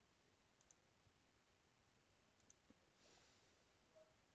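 Near silence: faint room tone with a few very faint computer mouse clicks, a pair under a second in and two more about halfway.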